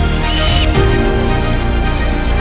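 Background music with sustained notes and a brief high note about half a second in.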